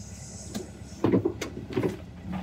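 VW bus engine running low as the van rolls slowly, with sharp clicks and a few short knocks from the cab, the loudest about a second in and near the end.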